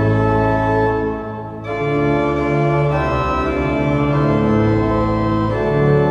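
Cathedral pipe organ playing a hymn tune in sustained full chords, with a short breath between phrases about a second and a half in.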